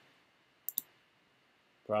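Two quick computer mouse clicks, a split second apart, in otherwise near silence.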